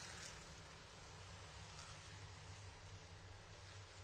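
Near silence: a faint, steady low hum of the pack of modified race cars running at pace speed, under a light hiss.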